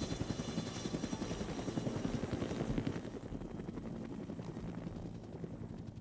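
Helicopter flying overhead: rapid, even rotor chop with a thin steady high whine above it, growing fainter after about three seconds.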